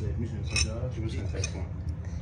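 A spoon clinking lightly against a cup of hot chocolate a couple of times, as it is tasted.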